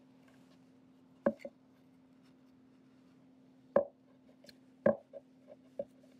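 Sharp wooden knocks on a tabletop as a wooden stick is rolled up inside a cotton t-shirt: three louder knocks, about a second, three and a half and five seconds in, with a few lighter taps after the last. A faint steady hum runs underneath.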